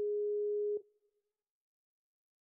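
Skype outgoing-call ringback tone: one steady, pure tone lasting just under a second, then silence until the next ring. The call is still ringing and has not been answered.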